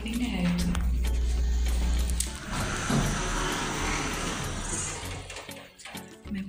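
Passenger elevator running with a low steady hum that stops a little over two seconds in as the car arrives, followed by a few seconds of hissing, rustling noise as the doors open.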